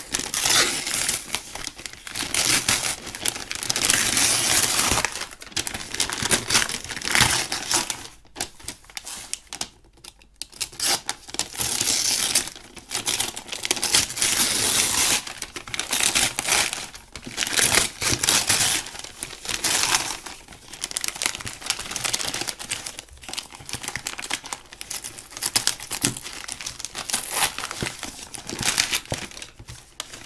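Brown kraft-paper parcel wrapping being torn and crumpled by hand, in irregular bursts of rustling and ripping, with a short lull about eight seconds in.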